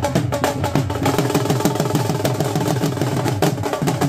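Several dhols, double-headed rope-tensioned barrel drums, beaten with sticks in a fast, steady beat.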